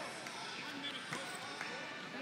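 Thuds and slaps of two heavyweight freestyle wrestlers hand-fighting in a tie-up and shifting their feet on the mat, with two sharper impacts about a second apart.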